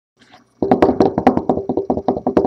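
A fast, even run of knocks, about a dozen a second, each with a short ringing pitch, starting about half a second in.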